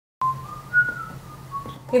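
A person whistling a short, slow tune: a few held notes that step up and then back down.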